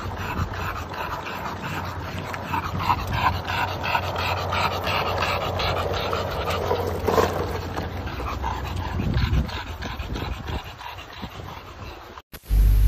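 A pet panting rapidly, about three quick breaths a second, fading over the last few seconds.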